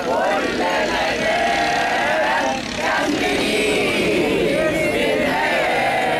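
A crowd of men and women chanting together in unison, the phrases long and drawn out, with a brief break between phrases a little under three seconds in.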